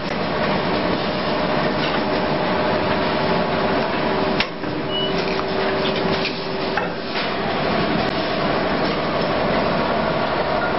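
Automatic blister packing machine running: a continuous mechanical clatter over a steady motor hum, with sharp clacks from its forming and sealing press, the loudest about four and a half seconds in and more near seven seconds.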